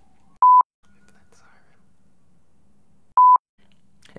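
Two short electronic beeps of a single steady pitch, the first just under half a second in and the second about three seconds in, with only a faint low hum between them.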